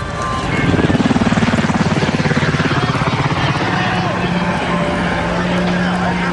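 Helicopter rotor beating rapidly, strongest in the first half, then settling into a steady low drone.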